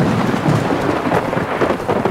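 Heavy rain, a loud steady rush that cuts in suddenly.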